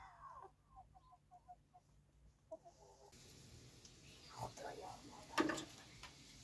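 Chickens clucking: one short call at the start, then a run of soft, repeated clucks at about four a second for the first three seconds. After that there is a faint steady hiss with a couple of sharp knocks near the end.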